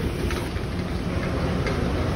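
Steady low rumbling background noise, with no speech.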